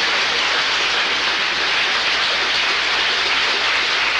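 Studio audience applauding, with laughter mixed in, as a steady, even wash of clapping.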